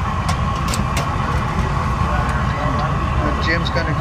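Trailer-mounted glass furnace's burner and blower running steadily: a low rumble under a thin steady whine, with a few light clicks in the first second.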